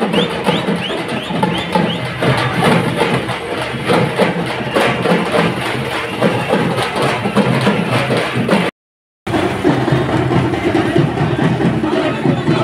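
Rhythmic drumming and percussion from a street procession, dense and steady. The sound cuts out completely for about half a second about three-quarters of the way through.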